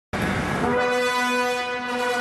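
Brass music opening: a short noisy burst at the start, then brass instruments holding a sustained chord from about half a second in.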